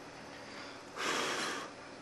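A single short breath, a rush of air about a second in and lasting under a second, over faint room hiss.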